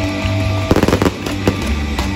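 Live rock band playing loudly over a crowd PA, with a quick string of sharp stage-pyrotechnic bangs about three-quarters of a second in.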